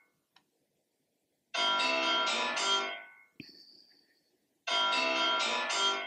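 Mobile phone ringtone: the same short melodic phrase of keyed notes repeating about every three seconds, with silent gaps between. A brief knock and a short high beep about three and a half seconds in.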